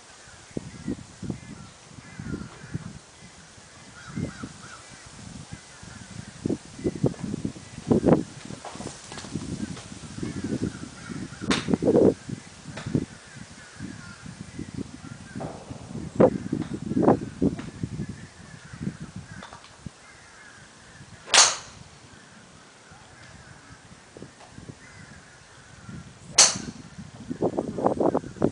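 Golf club striking balls: three sharp clicks of clubface on ball, the two loudest in the second half about five seconds apart, over uneven low rumbling noise.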